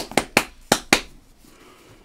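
Trading cards in a stack being flicked and slid one past another by gloved hands: five sharp snaps, about one every fifth of a second, in the first second, then quiet.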